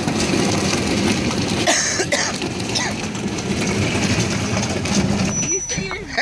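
Hard plastic kiddie pool dragged over asphalt on a tow strap: a continuous rough scraping and rumbling, with a motor vehicle running as it tows.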